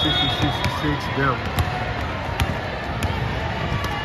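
Basketballs bouncing on a hardwood gym floor, sharp thuds at irregular intervals about once every second, over players' voices and general chatter echoing in a large hall.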